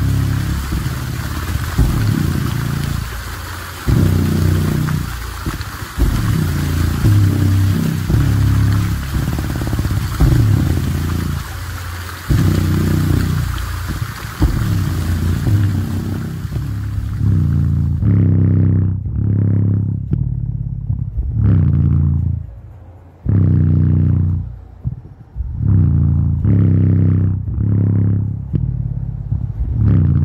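JBL Boombox 2 Bluetooth speaker playing bass-heavy music, deep bass notes coming in pulses with short gaps between them. For about the first eighteen seconds a steady hiss of splashing water lies over the bass; after that only the bass remains.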